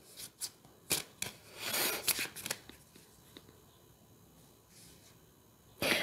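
A tarot deck being shuffled by hand: a few light clicks and a short rustle of cards sliding against each other in the first half.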